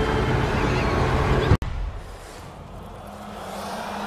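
Film soundtrack of an underwater scene: a dense low rumble with sustained low tones that cuts off abruptly about one and a half seconds in. A quieter hush follows, with a faint low hum swelling near the end.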